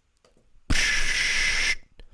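A hissing noise about a second long, starting abruptly and cutting off, made as an example of ordinary noise rather than a musical note. Its energy spreads over a wide range of high frequencies, with no clear pitch.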